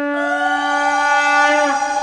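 Two conch shells (shankha) blown together, each holding one long steady note: a lower note already sounding, and a higher one that comes in just after the start with a slight upward slide. The lower note stops near the end while the higher one carries on.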